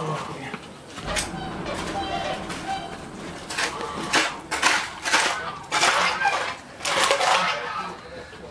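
A bear eating from a plastic crate of food, with a run of crunching, smacking bites in the second half.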